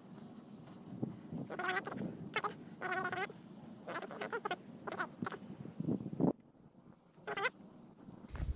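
Dog whining: a series of high-pitched whining cries, some drawn out, in two clusters and then once more briefly near the end.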